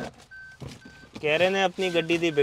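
A car's electronic warning chime beeping steadily, about twice a second, with a man talking over it from about a second in.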